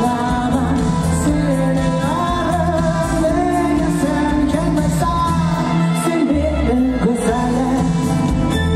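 A male pop singer singing an Uzbek estrada pop song live into a handheld microphone over amplified backing music with a steady low beat.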